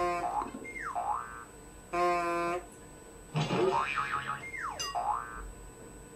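Electronic instrument playback of twangy plucked notes whose tone sweeps down and back up like a "boing", with a short held note about two seconds in.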